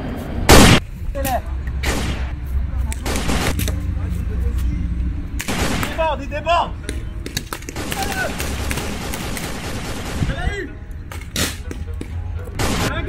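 Scattered sharp gunshot-like shots in a paintball game, about seven in all. The first, about half a second in, is by far the loudest. A low steady rumble runs under the first half.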